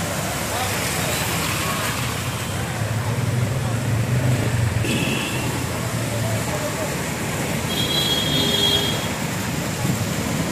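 Traffic driving through a flooded underpass: vehicle engines running and water splashing and washing under tyres, with voices in the background. Two short high-pitched beeps sound, one about five seconds in and a longer one near eight seconds.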